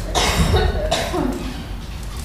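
A person coughing: a noisy burst lasting under a second near the start, followed by a brief vocal sound.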